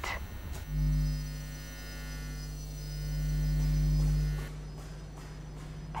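A low, steady electrical-sounding hum comes in just under a second in, swells and then cuts off about four and a half seconds in.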